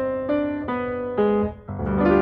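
Background music: a piano-like keyboard playing a melody of single notes, about two a second. Near the end the sound dips briefly before a fuller chord comes in.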